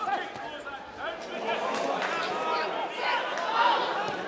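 Several men's voices shouting and calling at a football match, overlapping one another.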